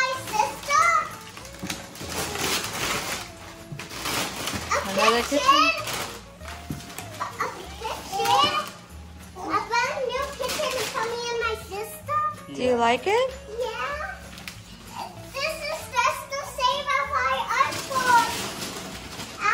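Young children's voices chattering and squealing without clear words, while wrapping paper is ripped and rustled off a large cardboard box several times.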